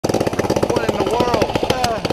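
Go-kart's small single-cylinder engine running at idle, a fast, even chugging of firing pulses, with a person's voice over it.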